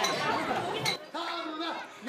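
Mostly speech: a girl's voice finishing a sentence over crowd chatter, with a sharp clink just under a second in, then another voice held on a steady pitch.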